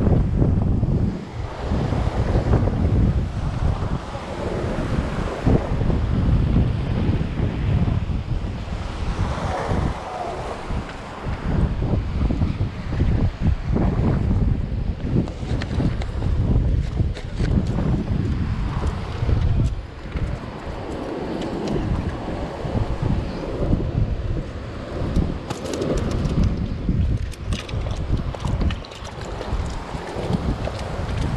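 Wind buffeting the microphone in gusts, with surf washing over shoreline rocks behind it.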